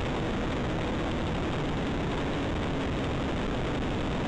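Steady, even hiss-like noise with no distinct tones, holding at one level throughout.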